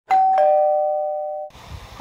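A two-note ding-dong chime, like a doorbell: a higher note, then a lower note about a quarter second later. Both ring on steadily and cut off together at about a second and a half in.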